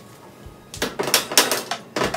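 A metal baking tray being slid into an oven, knocking and scraping against the oven in a quick run of clatters that starts about a second in.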